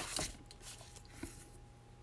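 Faint light taps and rustles of a cardstock panel being handled on a craft mat, a couple right at the start and one about a second in, over a low room hush with a faint steady hum.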